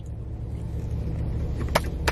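Steady low rumble of a car idling, heard from inside the cabin, with a couple of sharp clicks near the end.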